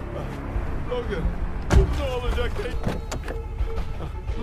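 Steady low rumble inside a moving car's cabin, with a single sharp thump a little under two seconds in.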